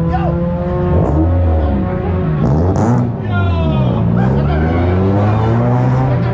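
Several car engines revving and driving past close by, their pitch sweeping up and down again and again over a steady engine drone.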